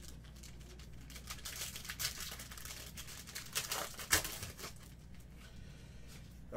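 Thin clear plastic crinkling in the hands as trading cards are handled, in irregular bursts, loudest about four seconds in.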